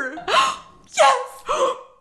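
A woman gasping three times in excited delight: short breathy intakes, each ending in a brief voiced squeal.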